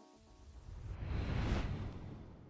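A whoosh sound effect that swells for about a second and fades: the sting of a GoPro logo outro animation.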